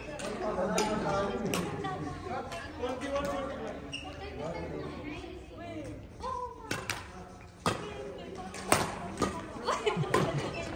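Men's voices talking between points in a large hall. Near the end a badminton rally starts: four sharp racket strikes on the shuttlecock, each under a second apart.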